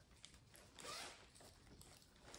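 Faint rustling of a plastic bag and its wrapping being handled and pulled open, with one louder swish about a second in.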